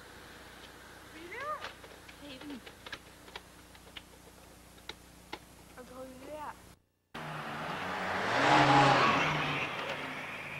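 Brief distant voices and scattered sharp light knocks, then, after a short break, a passing motor vehicle that swells up to its loudest a little before the end and fades away.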